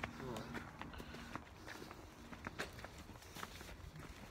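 Footsteps on a dirt path, a run of light, irregular steps with small knocks and rustles from the phone being carried.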